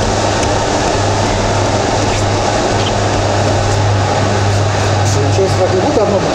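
Steady mechanical hum and rushing noise of workshop equipment, with a constant low drone underneath.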